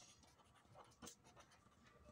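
Faint scratching of a pen writing on paper, in short strokes.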